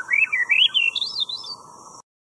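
A high, warbling, whistle-like chirp sound effect that climbs in pitch in wavy steps for about a second and a half, over a faint steady hiss, then cuts off abruptly.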